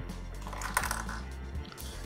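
Soft background music, with faint small clicks and crackles near the middle as a paper sticker is peeled from its backing sheet by hand.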